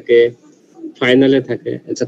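Only speech: a man talking in short phrases, with a pause in the first half.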